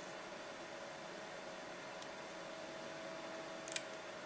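Steady low hiss and faint hum of a quiet room with a computer running, broken near the end by one sharp computer mouse click, with a fainter click about two seconds in.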